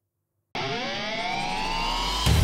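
Intro riser sound effect: after a short silence it starts suddenly about half a second in and swells with several pitches gliding steadily upward, leading into the intro music.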